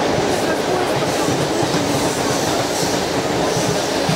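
Steady running noise of a moving commuter train carriage heard from inside: wheels and bogies rumbling on the track under the car body, with faint voices in the background.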